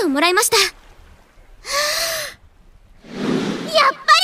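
A girl's high-pitched voice in Japanese anime dialogue: a short spoken line, then a loud breathy gasp about two seconds in, and another deep breath before she speaks again.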